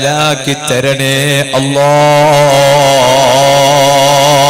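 A man chanting a religious verse in a melodic, ornamented style through a microphone and PA, with short sung phrases and then a long, wavering held note beginning about halfway through.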